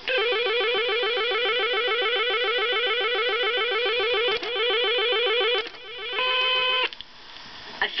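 Electronic cue tone on a Mego 2XL Sports II 8-track tape, played through an 8-track player's speaker while the listener is meant to press a button: a fast, repeating chirping warble for about five and a half seconds, then a short steady beep a moment later. A few clicks fall in between.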